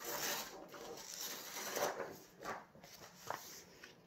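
A sheet of white paper being picked up and handled, rustling and rubbing, with a few short scrapes in the second half.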